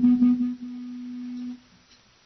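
A single steady held note from the band's amplified instrument, a plain unwavering tone that stops about a second and a half in, leaving near silence.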